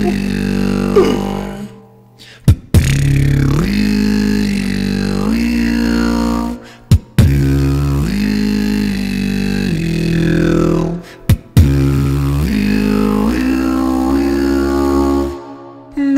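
Solo beatboxing: long, sustained vocal bass lines with pitch bends, in four phrases of a few seconds each, broken by brief gaps with sharp snare-like clicks.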